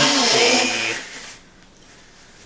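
A man blowing his nose into a tissue: one loud, noisy blast lasting about a second.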